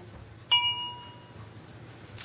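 A single bright ding, like a small chime or bell struck once about half a second in, ringing out with a few clear tones and fading within about a second.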